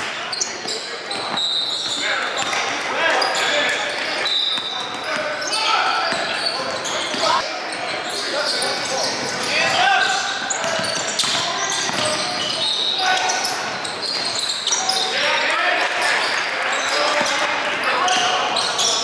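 Live basketball game sound in a large echoing gym: a basketball being dribbled on the hardwood court, short high sneaker squeaks, and indistinct voices of players and spectators calling out.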